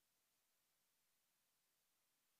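Near silence: only a faint, steady hiss on an otherwise dead audio feed.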